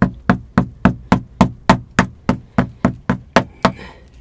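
Rapid, evenly spaced knocks of a hand-held tool chipping into a hard adobe brick wall, about three to four strikes a second. The strikes stop near the end, followed by a short scrape.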